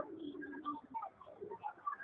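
A pigeon cooing: one low, drawn-out coo in about the first second, over faint scattered murmuring.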